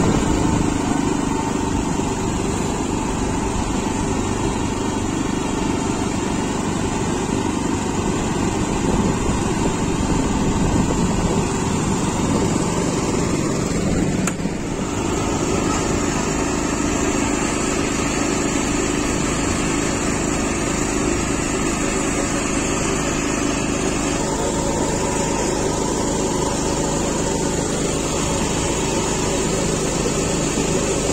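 MTZ Belarus walk-behind tractor's small engine running steadily as it drives along the road, heard from the seat behind it with road and wind noise. The sound dips briefly about halfway through, then carries on the same.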